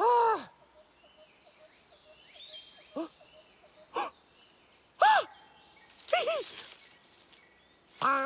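A cartoon monkey's wordless vocal exclamations, short rising-and-falling cries: one at the start, brief blips about three and four seconds in, a louder cry about five seconds in and a quick pair just after six seconds. Between them a faint jungle ambience with light bird chirps.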